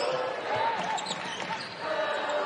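Game sound from a basketball gym: a steady crowd murmur with a basketball bouncing on the hardwood court, and short curving squeaks, typical of sneakers on the floor, about half a second to a second in.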